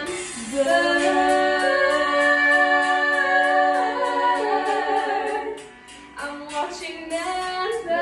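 A small group of girls singing together, holding long notes in harmony. The singing drops away briefly a little before six seconds in, then comes back.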